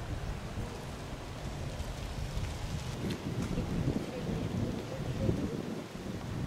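Wind rumbling and buffeting on the camera microphone outdoors, an uneven low noise that grows a little busier about halfway through.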